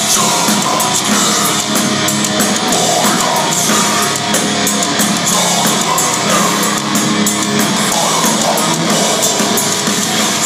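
Melodic death metal band playing live at full volume: distorted electric guitars over a drum kit with rapid cymbal and drum hits, heard from the audience in the hall.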